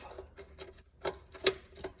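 Irregular sharp clicks and ticks, one to three a second, from hands and tools working a fog light's mounting bolt and hardware under a truck's front bumper.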